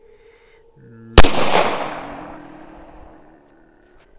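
A single very loud pistol shot from a Glock about a second in, its report fading in a long echo over roughly two seconds. A brief rising hum comes just before the shot.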